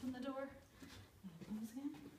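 A woman's voice speaking briefly and softly, the words unclear.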